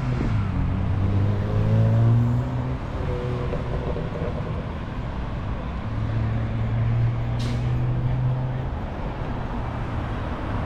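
Road traffic at a city intersection: the low engine hum of passing vehicles, one fading out about three seconds in and another rising and passing from about six to nine seconds. A brief hiss cuts in about seven seconds in.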